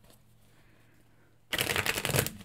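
A deck of tarot cards being shuffled by hand. It starts suddenly about one and a half seconds in, after a near-silent pause, as a dense run of papery clicks and rustling.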